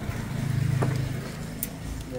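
Small motorcycle engine running, freshly revived by a workshop service, given a brief blip of throttle that swells and eases back to idle in the middle.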